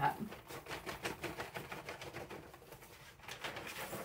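Diamond dust glitter sliding off a tilted sheet of paper and trickling into a small plastic jar: a dense, uneven patter of tiny ticks and scratches.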